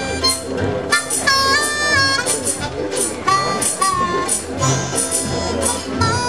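Live acoustic string band playing: strummed strings keep a steady beat under a wind instrument that plays long, held melody notes stepping up and down.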